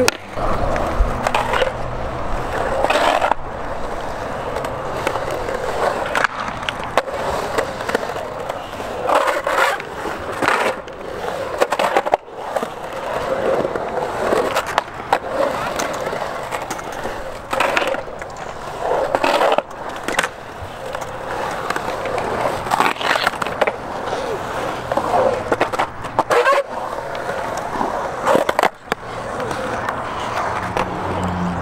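Skateboard wheels rolling on a concrete skatepark, with sharp clacks and knocks every few seconds as boards and trucks strike the concrete.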